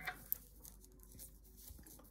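Faint clicking of metal knitting needles and rustle of yarn as stitches are worked by hand, with one sharper needle click about a third of a second in.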